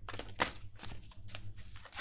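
A tarot deck being shuffled by hand: a rapid, irregular run of cards clicking and rustling against each other.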